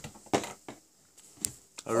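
A few faint, short clicks and rustles of handling noise as plush toys and figures are moved by hand, then a laugh begins at the very end.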